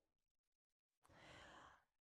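Near silence, with one faint breath lasting under a second, a little past the middle.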